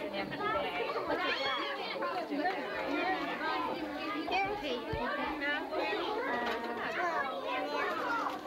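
Many kindergarten children talking and chattering over one another at once, with a brief low thump about five seconds in.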